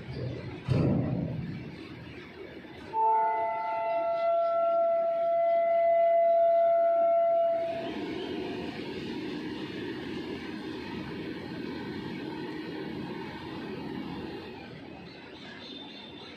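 The horn of an Indian Railways WAG-7 electric locomotive hauling a freight train sounds one long multi-tone blast, starting about three seconds in and lasting about four to five seconds. It plays over the rolling rumble of covered goods wagons passing on the rails, which goes on steadily after the horn stops. A couple of knocks are heard in the first second.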